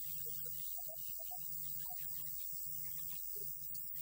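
Low, steady electrical mains hum that drops out briefly now and then, with faint, broken fragments of a man's voice behind it.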